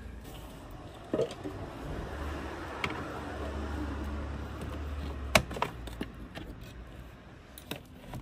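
Hand-work noise on a car heater box: scattered clicks and light rustling as gloved hands work a retaining clip and the plastic and metal parts around it, with a sharp click about five seconds in. A low hum sits underneath through the middle.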